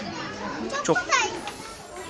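Children's voices and chatter, with a high-pitched child's call that falls in pitch about a second in.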